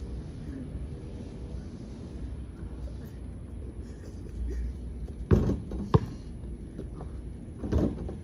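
A basketball bouncing twice on a paved driveway, sharp bounces about five and six seconds in, with another knock near the end, over a low steady outdoor rumble.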